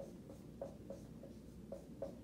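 Dry-erase marker writing on a whiteboard: a few faint, short strokes.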